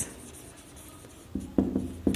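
Marker writing on a whiteboard: faint strokes at first, then a few short, louder strokes in the last second.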